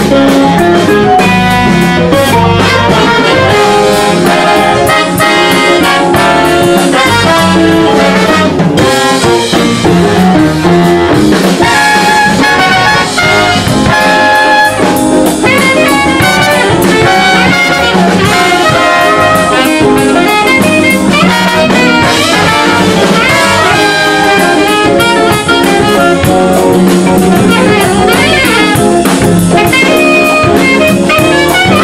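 A live jazz band playing: a horn section of saxophones and trombone over guitar, keyboards, bass and drums, loud and continuous.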